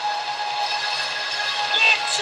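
A sustained chord of several steady tones over a low hum, with a short gliding tone near the end.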